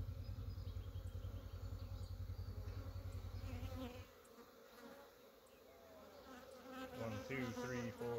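Honeybees buzzing around an opened hive and the frame of queen cells lifted from it. A low fluttering rumble lies under the buzz and cuts off abruptly about four seconds in.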